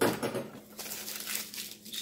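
Newspaper being torn into strips and crumpled by hand, loudest right at the start, then lighter rustling.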